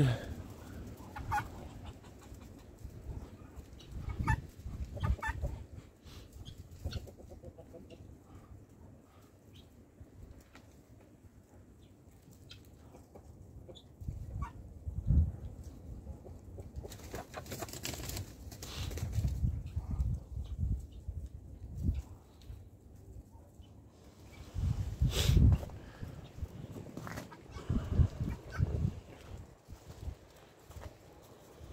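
Chickens clucking among a flock of Muscovy ducks, in scattered short calls. Several loud, low thumps and rumbles come and go, the loudest about three-quarters of the way through.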